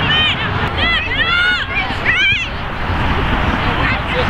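Several high-pitched voices shouting during play on a soccer field, in three outbursts in the first two and a half seconds, over a steady rumble of wind on the microphone.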